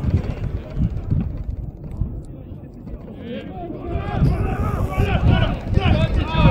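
Low wind rumble on the microphone, then from about halfway several voices shouting at once, overlapping and growing louder toward the end.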